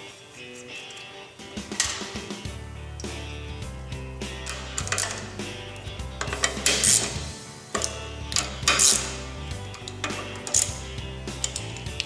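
Hand ratchet clicking in several short bursts, with light metal clinks, as nuts and lock washers are run down onto the water pump housing studs of an outboard lower unit, over background music.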